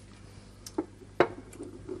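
A small wine glass set down on a wooden table: a few soft knocks, the loudest a little after a second in, over a faint steady hum.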